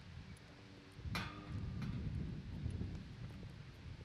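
Outdoor wind buffeting the microphone as an uneven low rumble, with one sharp metallic click about a second in and a fainter one shortly after.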